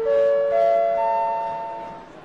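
Airport-style public-address chime: a rising run of bell-like notes, each entering higher than the last about every half second and ringing on together, the top note about a second in, then fading. It signals that an announcement follows.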